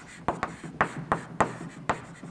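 Chalk writing on a blackboard: about half a dozen irregular taps and short scratches as letters are written.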